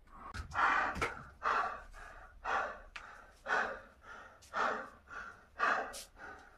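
A man breathing hard and forcefully through a set of pull-ups, one loud gasp-like breath about every second. Two sharp clicks come in the first second.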